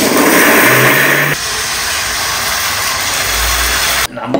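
Electric mixer grinder (Vidiem) running with a small steel jar: a loud, steady motor whir, louder for the first second or so, then settling to a slightly lower level.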